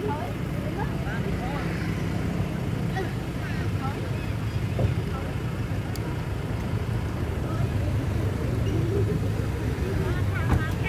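A steady low rumble, like a vehicle engine or traffic nearby, with faint voices and short high chirps scattered over it.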